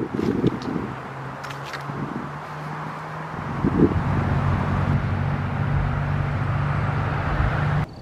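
Outdoor traffic noise: a motor vehicle's steady low engine hum over a wash of outdoor background noise, getting louder about halfway through and cutting off suddenly just before the end.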